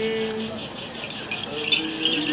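Crickets chirping in a steady, even pulsing rhythm. A man's held chanted note ends about half a second in, and chanting starts again near the end.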